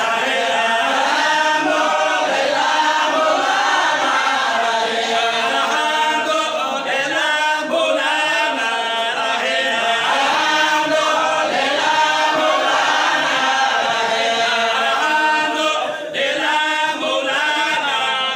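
A group of voices chanting together, one steady unbroken chant with a short dip near the end.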